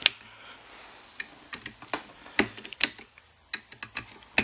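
Torque wrench set to 10 inch-pounds driving the Torx screws of a scope's rings down: a series of irregular sharp clicks and ticks as the bit seats and the wrench works each screw, the loudest just after the start and in the middle.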